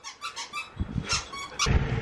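A squeaky dog toy being squeaked a few times in short, high squeaks, with low thumps of handling noise near the end.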